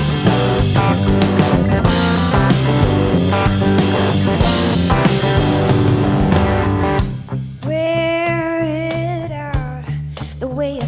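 Live rock trio playing loudly: electric guitar, electric bass and drum kit. About seven seconds in the band drops out, and a woman's voice sings one long held note over a sustained bass note, starting a new phrase near the end.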